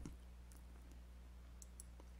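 Near silence: a steady low electrical hum, with a few faint clicks, one about half a second in and two close together near the end.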